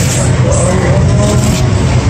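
Road traffic on a busy city street: cars and a shuttle bus driving through an intersection, a loud, steady din of engines and tyres.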